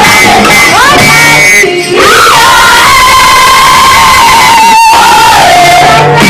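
A large student choir singing a traditional-style song loud and full, with shouts mixed in. One high voice holds a long note through the second half.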